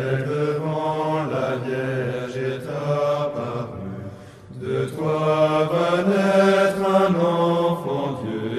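Slow French Catholic hymn sung in long held notes, chant-like, with a short dip in loudness about four seconds in.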